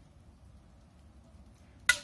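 Near quiet, then near the end a single sharp snap of a bowstring as an arrow is shot from a bow.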